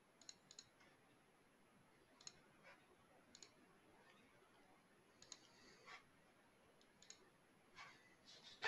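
Faint computer mouse clicks, single and in quick pairs, scattered through near silence.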